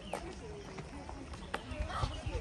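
Faint chatter of several people walking, with a few sharp footfalls on a paved path and a low rumble underneath.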